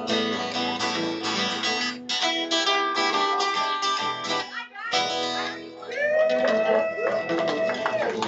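Two acoustic guitars playing a strummed instrumental passage with lead fills, breaking off briefly about four and a half seconds in, then a long held note that bends in pitch near the end.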